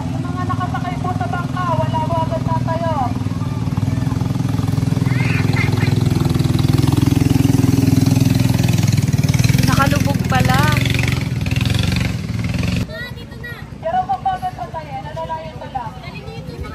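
Engine of a narrow motorized river boat (bangka) running as it passes close by, growing louder toward the middle and stopping abruptly about thirteen seconds in. Voices call out over it at the start and again near the end.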